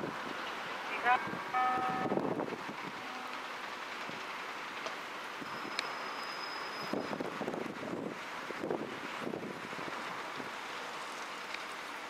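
A person's voice calls out briefly about a second in, then steady wind noise on the microphone, with faint soft footfalls of a Pembroke Welsh corgi running across grass.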